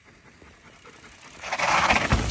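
Mountain bike riding down a dirt and rock trail: quiet at first, then tyre noise and rushing air swell quickly and loudly as the bike comes through over the last half second.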